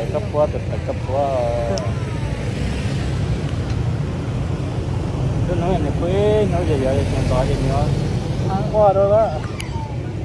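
People talking in short bursts over a steady low outdoor rumble.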